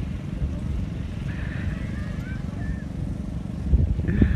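Wind buffeting a phone's microphone: a steady low rumble, with a faint voice in the background from about a second in.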